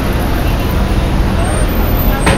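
Steady city street traffic noise, a continuous low rumble and hiss of passing vehicles.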